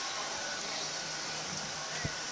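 Steady outdoor background noise, an even hiss with no distinct event standing out.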